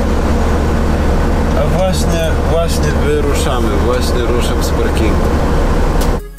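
Semi truck's diesel engine running with a steady low drone, heard from inside the cab, with a voice talking indistinctly over it.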